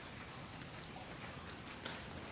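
Faint, steady water noise at a spring-fed cave pool, with one small click near the end.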